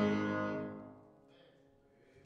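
A church choir's final sung chord ending and dying away over about a second, leaving a quiet hall.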